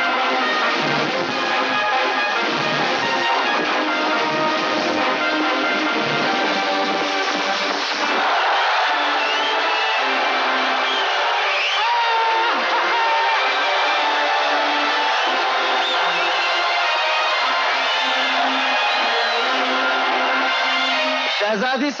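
Orchestral film background score with a crowd cheering and shouting over it; the cheering swells from about eight seconds in.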